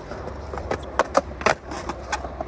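Skateboard wheels rolling on smooth concrete with a steady low rumble, then a few sharp wooden clacks about a second in: the tail popping on the ground and the board landing back under the rider's feet on a switch pop shove-it.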